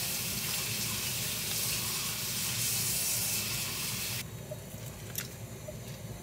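Kitchen sink tap running, water splashing into the basin, then turned off about four seconds in. A faint click follows.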